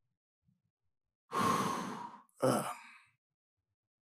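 A man sighing heavily: a long breathy exhale, then a shorter voiced one just after it.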